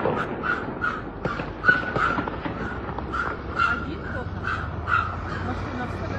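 Crows cawing in a continuous rapid series, about two to three harsh calls a second.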